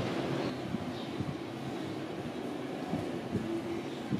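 Several jet skis running at speed some way off, their engines making a steady drone that wavers in pitch.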